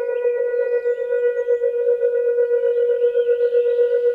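Meditation drone of a singing-bowl tone held at one pitch, its loudness pulsing in a steady waver.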